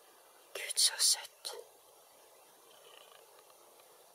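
A brief whispered remark about half a second to a second and a half in, then only faint steady background hiss.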